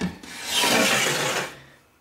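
A sliding glass terrarium door scraping along its track as it is pushed open: a short click, then one rasping slide lasting a little over a second.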